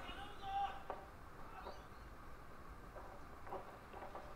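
Faint arena ambience from the original fight footage: a distant voice calling out briefly about half a second in, a few faint knocks, and low hiss.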